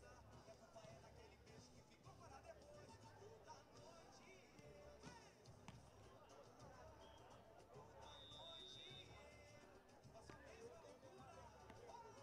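Near silence: faint open-air venue ambience with distant voices and faint music. A brief, faint, steady high tone sounds about eight seconds in.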